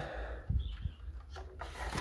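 A few faint knocks and rubs from a hand taking hold of the small pull-out feeder drawer at the base of a wooden birdcage.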